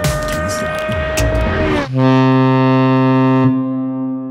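Channel intro sound effects: about two seconds of a loud noisy rush with a deep rumble and clicks, then a long, steady, deep horn-like note that slowly fades out.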